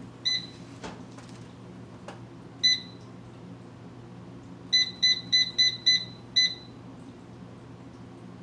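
Digital air fryer's control panel beeping as its buttons are pressed to set it: a single beep, another a couple of seconds later, then a quick run of six beeps at about four a second.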